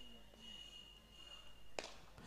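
Near silence: faint outdoor background with a thin steady high tone that fades out late on, and a single sharp click near the end.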